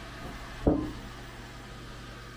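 Handling noise: a single sharp knock about two-thirds of a second in as the 3D-printed test part is handled close to the camera, over a steady low hum.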